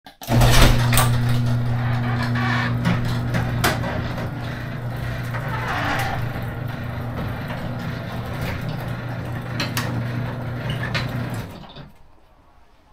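Electric garage door opener raising a sectional garage door: a steady motor hum with clicks and rattles from the door as it travels up. It stops near the end as the door reaches fully open.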